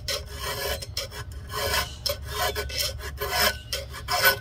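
An old, worn flat file drawn back and forth across a cutter of a chainsaw chain, square-filing the tooth, in steady strokes about three a second.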